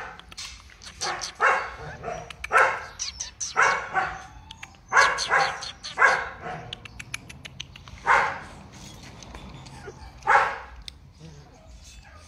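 Rottweiler puppies barking: about ten short, separate barks, coming close together at first and then spaced a couple of seconds apart toward the end.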